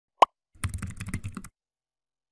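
A short rising pop, the loudest sound, then about a second of rapid computer-keyboard typing clicks as text is typed into a search box.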